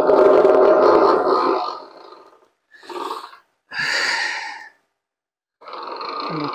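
Combat robot's spinning bar weapon turning through its roller-chain and sprocket drive. A loud run of chain noise starts suddenly and fades out over about two seconds, then come two shorter bursts. The new plastic chain tensioner is rubbing on the chain as it grinds into place.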